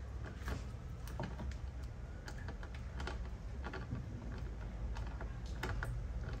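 Screwdriver turning a screw into the plastic side-mirror housing of a Subaru WRX: scattered light clicks and ticks at irregular times over a low background hum.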